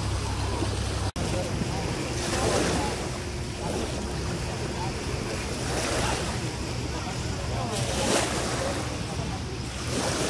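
Small waves washing gently on a pebbly shoreline, rising and falling in a few soft swells, with wind buffeting the microphone.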